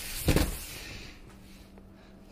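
A single dull thump as a cardboard shipping box is set down on a wooden table, about a third of a second in.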